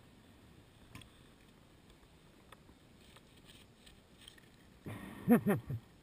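A person laughing briefly near the end, after several seconds of faint, steady background noise with a few light clicks.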